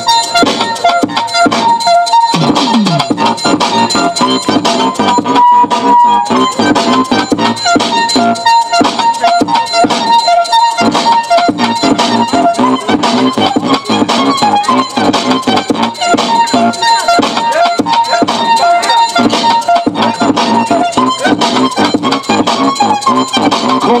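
Hip-hop music played by a DJ through PA speakers, loud and continuous with a steady beat.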